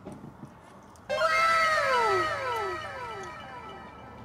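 A meow sound effect about a second in: an arching, falling call that repeats in overlapping echoes and slowly fades.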